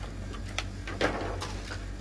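A few light clicks and crackles of plastic packaging, about four in two seconds, as a diecast airliner model in its plastic sleeve is lifted out of its clear plastic tray. Under them is a steady low hum.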